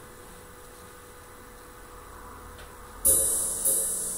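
Faint steady electrical hum and hiss from the keyboard setup, then about three seconds in the Yamaha electronic keyboard starts playing: two bright, cymbal-like percussive hits about 0.6 s apart, each fading away.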